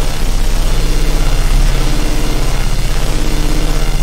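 A loud, harsh, engine-like droning noise with a strong low hum and a rapid, even flutter, held steady throughout.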